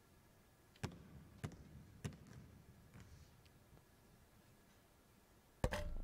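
A basketball bounced three times on a hardwood court, about half a second apart, as a free-throw shooter dribbles at the line. Near the end comes a louder, heavier knock as the shot strikes the hoop, a shot that goes in.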